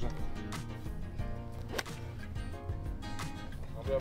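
Background music with a steady beat, cut by one sharp click of a golf club striking the ball a little under two seconds in.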